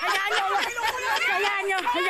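Several high-pitched voices talking and calling out over one another in lively chatter.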